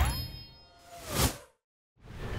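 Cartoon act-break sound effect: a bright chime ringing out and fading, then a short swoosh that swells about a second in and cuts off into silence.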